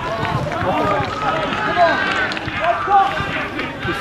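Several footballers' voices shouting and calling out over one another on the pitch, loud and continuous, none of the words clear.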